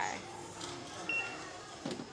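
A single short, high electronic beep from a supermarket self-checkout payment terminal, about a second in, over faint store murmur.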